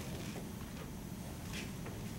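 Dry-erase marker squeaking and scratching across a whiteboard in a few short strokes as letters are written, the clearest about one and a half seconds in, over a steady low room hum.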